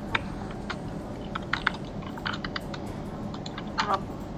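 A series of irregular light clicks, about a dozen, scattered over a steady low background hum.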